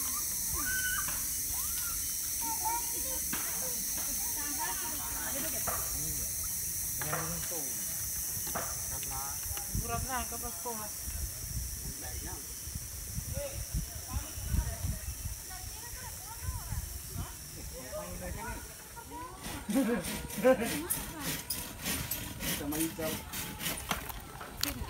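Indistinct voices of several people talking in the background over a steady hiss. Near the end, a run of quick, even knocks, about three a second.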